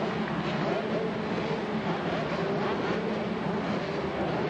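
A pack of 80cc two-stroke motocross bikes running together at the start line, their engine notes wavering slightly in pitch.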